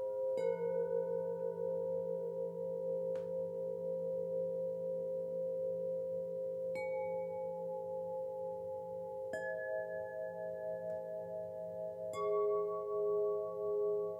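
Solfeggio chimes struck one note at a time, about every three seconds, four strikes in all. Each note rings on under the next, and the held tones pulse slowly.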